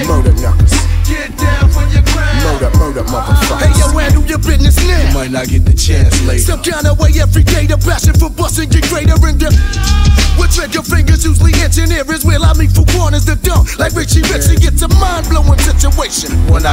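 1990s East Coast hip-hop track from a DJ mix: a rapped vocal over a beat with a heavy, pulsing bass line.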